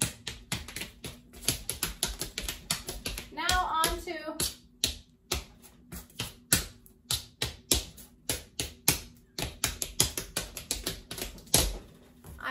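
Homemade coin taps, coins duct-taped to the soles of canvas sneakers, clicking on a Masonite tap board in quick, irregular tap-dance steps, with a heavier stomp near the end.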